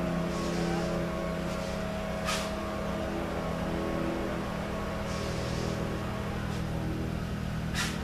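A steady low mechanical hum with several pitched tones, like an engine running. A short click comes about two seconds in and another near the end.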